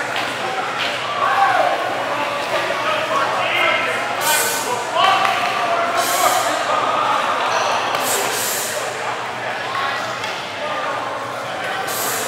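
Voices murmuring and echoing in a large hall, with a few sharp snaps and slaps, about two seconds apart, from two martial artists striking and stepping through a synchronized Tae Kwon Do form.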